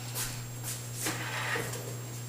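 Wire pastry cutter pressed through butter and oat crumble mixture in a glass mixing bowl: a few soft scraping, squishing strokes, roughly one every half second, over a steady low hum.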